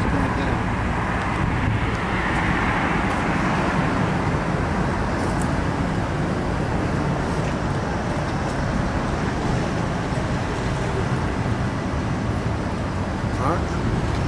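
Street traffic noise: a steady roadway hum from passing vehicles, swelling about two seconds in.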